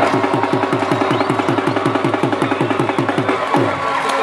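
Rapid, evenly paced drumbeats, about five to six a second, each stroke dropping in pitch, stopping shortly before the end.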